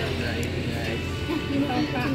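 Voices and background music over a steady low hum.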